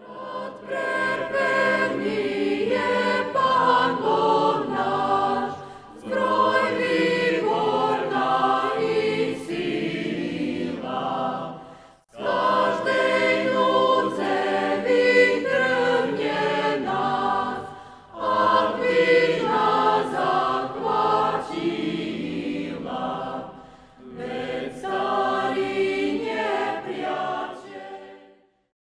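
A choir singing in phrases of about six seconds each, with a short break between phrases.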